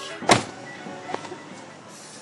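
A car door slams shut about a third of a second in, followed by a steady, fading background noise.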